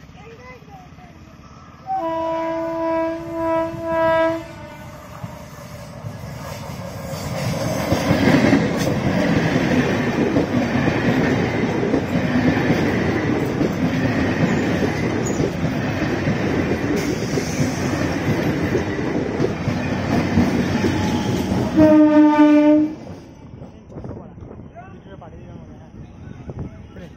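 Passenger train's horn sounds for about two seconds, then the train passes close by with a steady rumble of wheels on rail joints for about fifteen seconds. Near the end a second horn blast comes, shorter and slightly lower in pitch, and it is the loudest moment.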